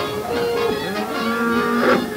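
A cartoon bull's mooing bellow, its pitch sliding up and down, over the orchestral film score.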